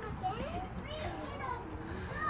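Several children's voices calling and chattering in the background of a busy playground.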